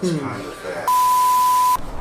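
A single steady high-pitched bleep, like a censor bleep, lasting just under a second about halfway through, after a brief bit of a man's speech.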